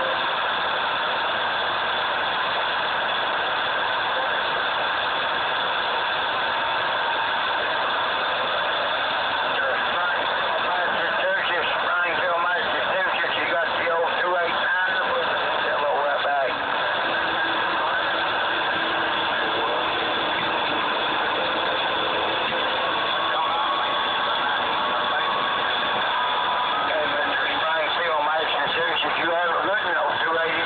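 CB radio receiver playing steady static, with faint, garbled voices of other stations coming through around the middle and again near the end.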